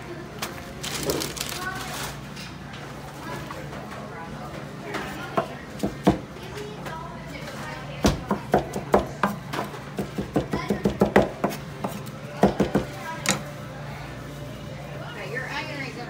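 Knife chopping smoked barbecue meat on a wooden cutting board: a quick run of sharp knocks, several a second, from about five seconds in until about thirteen seconds. Restaurant chatter and a steady hum run underneath.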